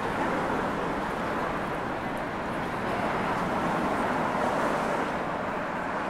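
Busy town street ambience: a steady, even background noise of traffic and passers-by, with no distinct events.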